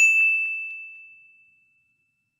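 A single bell-like ding: one sudden chime on a clear high tone that fades out over about a second and a half.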